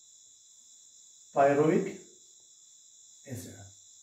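A man's voice speaking two short phrases, about a second and a half in and again near the end, over a steady, faint high-pitched hiss.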